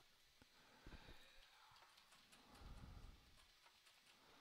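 Near silence: faint room tone with a few soft, low knocks, one about a second in and a short cluster near three seconds.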